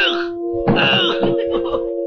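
A cartoon character's short wailing cry a little over half a second in, over music with steady held notes.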